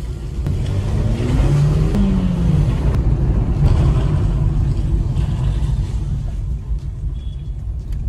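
A Maruti Suzuki Dzire driven along a rough village lane, heard from inside the cabin: a steady low engine and tyre rumble, with the engine note rising once about one to two seconds in as it pulls.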